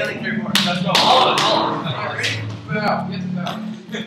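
Teenage boys' voices talking and calling out over one another, with a few sharp knocks among them.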